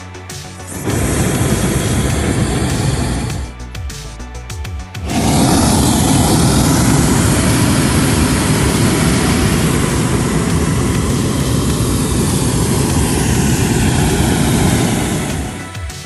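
Hot-air balloon's propane burner firing in two blasts, a short one of about two and a half seconds, then a long one of about ten seconds. Background music shows through in the gap between them.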